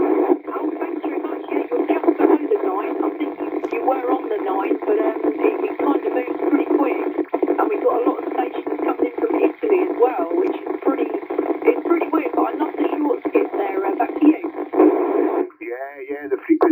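A voice received over a 27 MHz FM CB radio and heard through the rig's speaker: tinny, with the low and high ends cut off, and noisy enough that the words are hard to make out. It stops about a second before the end.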